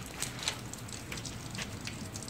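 Quiet, steady background hiss with a few faint, soft clicks scattered through it.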